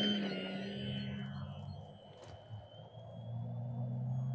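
Electric motor and propeller of an XFLY Glastar RC airplane at takeoff throttle, a steady high whine that fades after about a second as the plane moves off.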